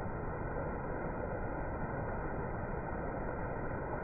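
Water pouring over a small weir, a steady, unbroken rushing noise.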